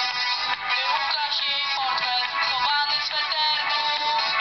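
Music: a song with a singing voice that bends up and down in pitch, thin in the bass.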